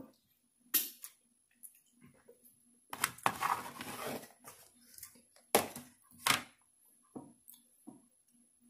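Close-miked eating mouth sounds: several sharp, wet lip smacks and finger-sucking clicks, with a longer stretch of wet chewing about three seconds in.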